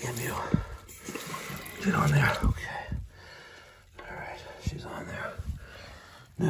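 A man mumbling under his breath in short, half-voiced bits, with a few small sharp clicks and knocks from plastic toilet-tank parts being handled as the refill hose is fitted to the fill valve.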